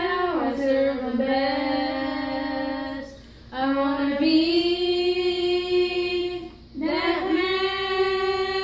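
Three boys singing a slow Christian song together in long held notes. The singing falls into three drawn-out phrases, with short breaks for breath about three and a half and seven seconds in.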